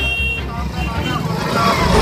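A motorbike engine idling close by with an even low pulse, under the voices of a small crowd.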